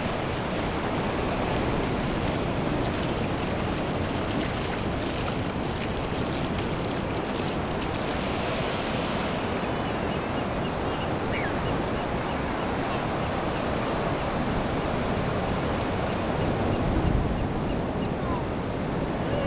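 Pacific Ocean surf breaking offshore and washing up over shallow sand, a steady rushing wash that never lets up.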